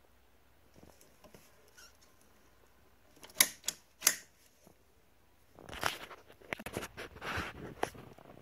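A double-pole circuit breaker in a household sub panel being switched off with a few sharp clicks about three and a half seconds in. This is followed by a few seconds of plastic scraping and clattering as the breaker is pried off the panel's bus bar.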